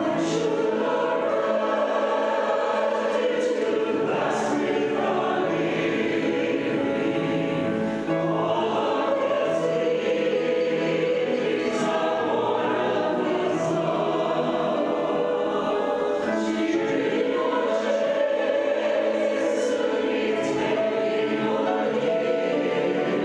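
Mixed choir of men's and women's voices singing an anthem together.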